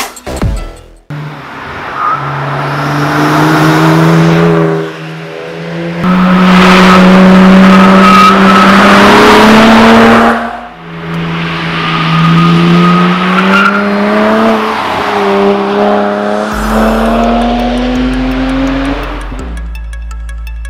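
A car engine revving hard as it accelerates, climbing in pitch in three long pulls with breaks between them like gear changes, over tyre and road noise.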